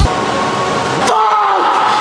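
A man's loud, drawn-out wordless yell begins about a second in, right after a sharp click, its pitch dropping and then holding.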